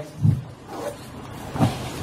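Steady room background noise in a pause between sentences, with two short low thumps, the louder one about a second and a half in.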